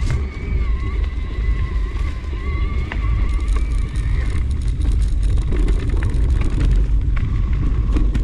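Mountain bike descending a dirt forest singletrack, heard as heavy wind rumble on the camera's microphone with short rattling knocks from the trail. A wavering whine runs through the first half and stops about four and a half seconds in.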